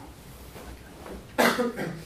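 A person coughing close to the microphone: one loud cough about one and a half seconds in, quickly followed by a couple of weaker ones.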